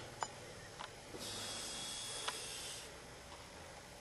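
A soft hiss lasting about a second and a half, with a few light clicks before and during it, over quiet room tone.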